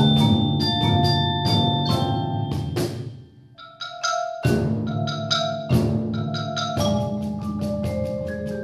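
A percussion ensemble playing marimbas and other mallet keyboard instruments, dense struck notes ringing over sustained low notes. About three and a half seconds in the playing briefly drops away, then comes back with sharp accented strikes.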